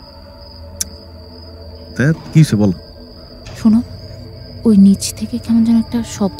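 Crickets trilling steadily in one unbroken high tone over a low hum, with a single click a little under a second in.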